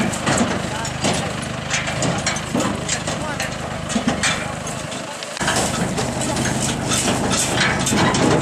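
Tractor engine idling steadily under the talk of field workers loading a trailer, with scattered knocks and rustles of sacks being handled.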